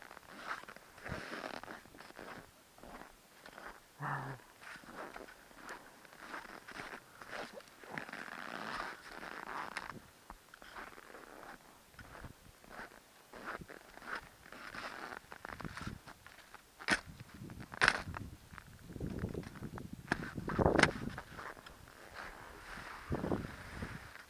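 Skis sliding and scraping over packed snow, heard close up from a goggle-mounted camera: irregular swishes and scrapes, louder near the end, with a couple of sharp clicks about two-thirds of the way through.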